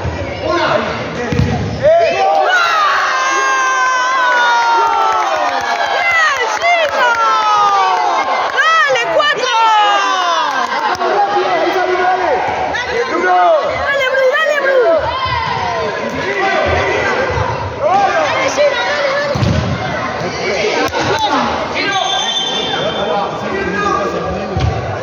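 Spectators at an indoor futsal match shouting and cheering, many high voices overlapping, busiest in the first half and then easing off, with a few dull thuds.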